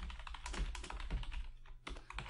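Fast typing on a computer keyboard, a quick run of keystrokes with a brief pause near the end.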